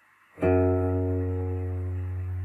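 A single low note picked on an electric guitar about half a second in, then left ringing steadily with a rich set of overtones.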